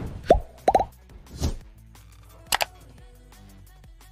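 Cartoon pop and click sound effects from a like-and-subscribe button animation: a pop with a falling pitch about a third of a second in, a quick double pop just before one second, a soft swish, then two fast clicks, over quiet background music.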